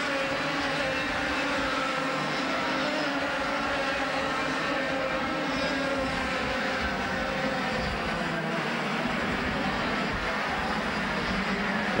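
A pack of 100cc two-stroke Formula A racing kart engines running at high revs. The sound is a steady, continuous note made of several engine pitches that rise and fall together as the karts race close together.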